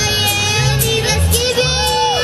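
A young boy singing a Mexican ranchera into a microphone over mariachi accompaniment, with a bass line stepping between notes about twice a second and a steady strummed rhythm.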